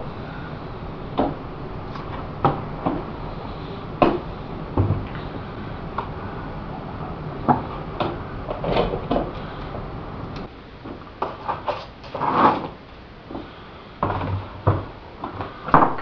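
Fiberglass model-airplane fuselage shell being flexed and pulled out of its mold by hand: scattered sharp cracks and pops as the part releases, with a few longer rubbing noises.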